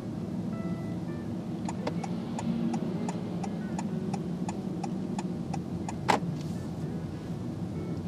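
Car turn indicator ticking about three times a second inside the cabin over the steady rumble of the moving car, then one loud sharp click about six seconds in.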